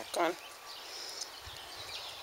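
Faint whir of a camcorder's autofocus motor, just switched back on, over quiet outdoor background.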